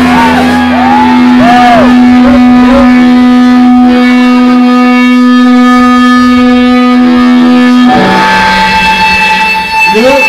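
Loud live rock band: an electric guitar holds one long sustained note for about eight seconds, with swooping bent pitches over it in the first three seconds. It then changes to a different held chord.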